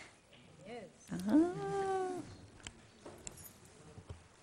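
A woman's voice making a drawn-out "uh" that rises in pitch and is held for about a second, after a short hum just before it.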